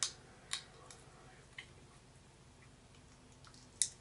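Sunflower seed shells cracking between the teeth: about five sharp, brief cracks. The loudest come at the start, half a second in and near the end, with faint chewing between them.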